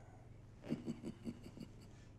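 A man's quiet chuckle: a quick run of about seven soft, breathy laugh pulses lasting about a second.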